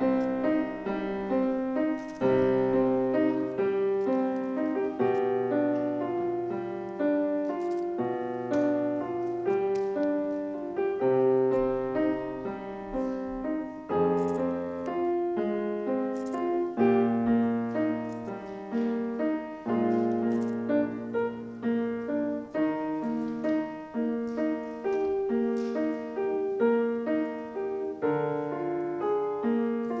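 Solo acoustic grand piano playing a classical sonata: a steady stream of quick melody notes over lower, longer-held bass notes.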